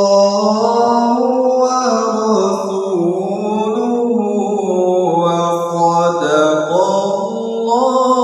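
A man's voice reciting the Quran in the melodic tilawah style, drawing out long held notes that glide and waver up and down in pitch.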